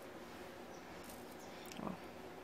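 Quiet room tone. Near the end comes a short, soft, pitched sound like a brief vocal hum, with a faint click or two.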